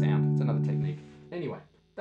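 Stratocaster-style electric guitar: a fingerpicked chord rings for about a second, then is damped and dies away. A brief vocal sound follows near the end.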